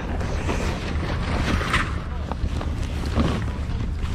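Rustling and creaking of a leather motorcycle race suit as it is lifted and bundled up by hand, in irregular scuffs. A steady low wind rumble is on the body-worn microphone underneath.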